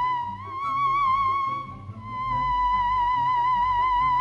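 Moog Theremini theremin sounding one high held note with a wavering vibrato. The pitch lifts slightly about half a second in, then sinks back and holds steady from about two seconds.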